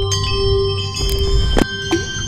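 Logo-intro sound effect: a cluster of bright bell-like chime tones that ring on, with a few sharp struck hits about a second and a second and a half in.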